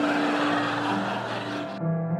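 Background music with a held note, overlaid by a noisy, hissing sound effect that cuts off abruptly near the end.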